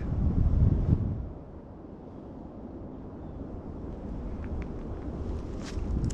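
Wind buffeting the camera microphone: a heavy low rumble for about the first second, then a weaker steady rumble.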